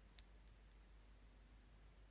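Near silence with three faint, short crackles in the first second: a paint-coated strip of bubble wrap being handled over cardboard.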